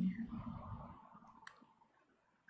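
The end of a spoken word fades out, followed by a low, fading rustle and a single sharp click about one and a half seconds in.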